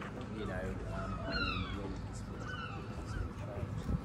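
Outdoor street ambience with indistinct voices of passers-by and a few short, high, falling calls over a steady low background rumble.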